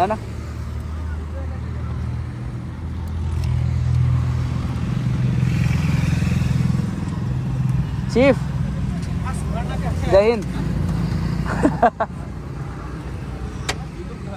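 Motorcycle engine idling nearby with a steady low hum, growing louder for a few seconds before settling back, with brief shouts from people now and then.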